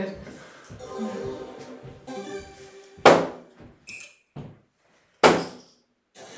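Electronic tones from the dartboard's game, then two soft-tip darts hitting a GranBoard electronic dartboard about two seconds apart. Each is a sharp thunk with a short ring-out, and both score as single 18s.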